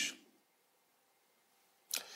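A pause in a man's talk: the end of his last word, then near silence, then one short, sharp breath sound from the speaker just before he speaks again.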